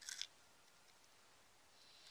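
Near silence, broken just after the start by one brief crackle of a small clear plastic bead packet being handled in the fingers.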